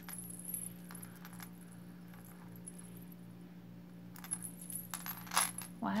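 Metal charm bracelets clinking and jangling as they are handled and laid on a shell tray: a few light clinks at first, then a busier run of louder clinks in the last two seconds.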